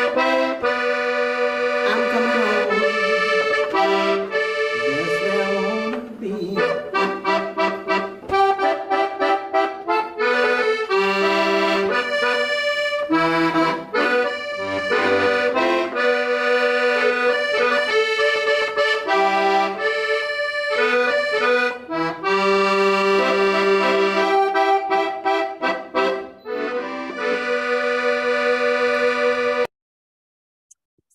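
Button accordion playing a zydeco song, with a woman singing along. The music stops abruptly near the end.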